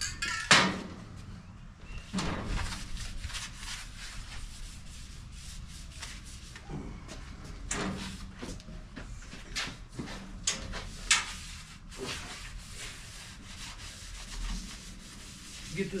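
Paper towel damp with denatured alcohol wiped over bare steel cart panels in irregular rubbing strokes, cleaning the metal before paint. A sharp knock about half a second in, when a spray can is set down on the steel top, is the loudest sound.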